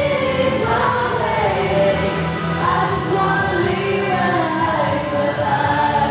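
A song from a stage musical: several voices singing together over an instrumental accompaniment with a steady bass.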